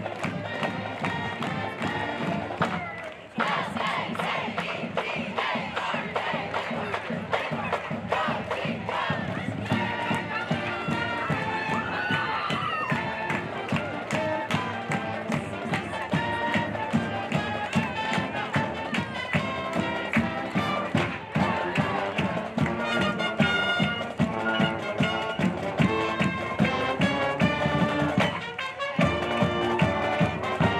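Marching band playing as it marches past: brass, saxophones and drums over a steady beat, with a brief break about three seconds in.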